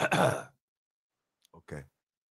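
A man clears his throat once, a short rasp that falls in pitch, then makes a brief, quieter vocal sound near the end.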